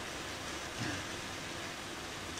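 Steady background hiss with a faint, brief vocal sound from the man a little before one second in.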